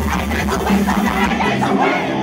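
Live rock band playing loud, with bass guitar, drums and sung or shouted vocals, heard from the audience at an outdoor stage. The deepest bass thins out briefly near the end.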